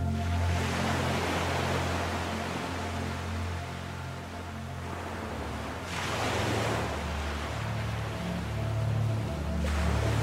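Slow ambient music of low, held notes, layered with ocean-wave sounds. The waves wash in about half a second in, again at about six seconds, and once more near the end.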